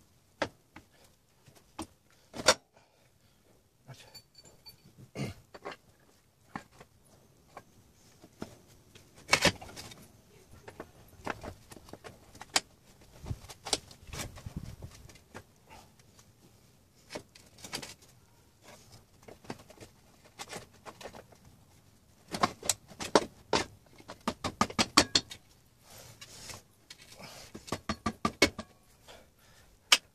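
Metal parts clinking and rattling as a motorcycle rear wheel is refitted by hand: scattered sharp clicks and knocks, then two runs of rapid jangling clinks in the last third.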